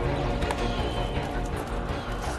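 Background music with horse hooves clopping over it.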